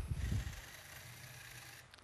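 Small LEGO electric motor driving a toy car backward at low power, a faint steady whir that cuts off suddenly near the end as the program switches the motor off.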